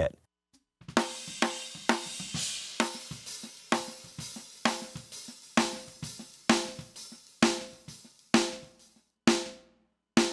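Multitrack drum-kit recording played back, with the original snare blended with a snare sample made from the same kit. Sharp drum hits come about twice a second, each ringing out, starting about a second in. Toward the end the spill between hits drops away and the hits stand more isolated.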